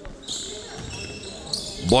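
A basketball dribbled on a hardwood court, with high-pitched squeaks of sneakers from about a quarter-second in.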